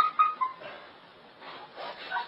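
Short animal cries: a loud cluster at the start and a few fainter ones near the end.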